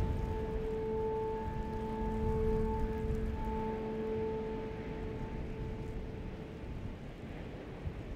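Quiet ambient interlude in a pop song: a low, rumbling wind-like drone under one held musical note that fades out about five seconds in.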